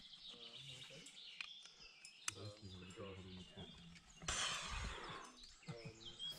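Faint outdoor ambience on the climb, with faint voices in the background, two small sharp clicks about a second and a half and two seconds in, and a short breathy hiss about a second long near the end.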